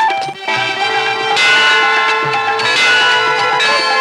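Temple bells ringing repeatedly over an instrumental passage of a Tamil devotional film song, with a held steady note and a low drum beat underneath. A singing voice breaks off just as the bells begin.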